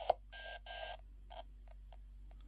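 Receiver audio from a uSDX/uSDR QRP SDR transceiver's built-in speaker as its volume is turned down: a click, two short bursts of hiss, then briefer and fainter bursts that fade out.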